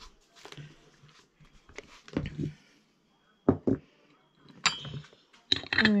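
A quiet stretch with a few short, muffled bits of voice. About four and a half seconds in comes one sharp, light clink, like china or glass on the table.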